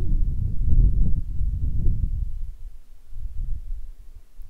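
Low rumbling and buffeting on the microphone, strongest in the first couple of seconds and fading after.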